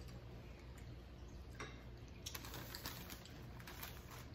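Light clicks and crackles at a dinner table: a single click, then a quick, dense run of them from about two seconds in to near the end.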